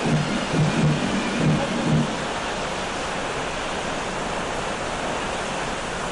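Steady, even rushing noise of open-air parade-ground ambience, with a few short low tones in the first two seconds.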